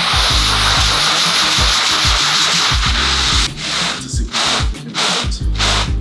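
Hand scrub brush scrubbing a wet, foam-soaked wool rug: a continuous hiss for about three and a half seconds, then breaking into shorter strokes. Background music with a steady beat runs underneath.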